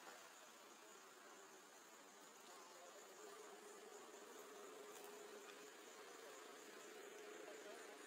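Faint insect buzzing in leafy forest, with a steady hum that holds one pitch from about three seconds in.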